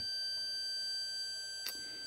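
Digital multimeter's continuity beeper sounding as one steady high-pitched beep that does not stop, while the probes sit on the 12 V pins of an unpowered server's power connector. The owner thinks a charge on the board's capacitors is what keeps it beeping.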